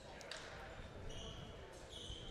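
Quiet gymnasium room tone with faint thuds of a volleyball being bounced on the hardwood floor by the server before his serve.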